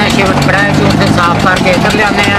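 A man talking over an engine running steadily in the background with a constant low hum.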